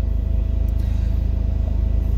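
Car engine idling, a steady low rumble with an even pulse, heard from inside the cabin.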